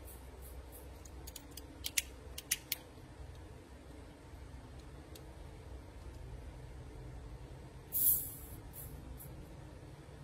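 Refill valve of a Cohiba butane torch lighter being pressed with a small metal pick to bleed out the gas: a few light metal clicks in the first three seconds, then a brief hiss about eight seconds in as the last butane escapes and the lighter runs empty.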